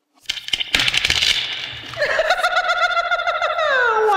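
A blown, wavering hoot-like tone from a small white object held at the mouth: breathy blowing at first, then a pitched tone that holds and slides down in pitch near the end.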